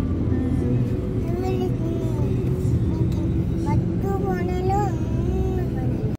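Car driving slowly round a multi-storey car park ramp, heard from inside the cabin: a steady low engine and road rumble, with wavering high-pitched tones coming and going over it.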